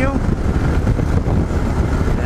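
Steady wind rush on the microphone over the Yamaha XT 660Z Ténéré's single-cylinder engine cruising at highway speed.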